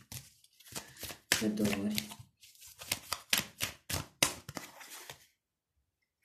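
A tarot deck shuffled by hand: a quick, irregular run of card clicks and slaps, with a short stretch of voice about a second and a half in. The shuffling stops about a second before the end.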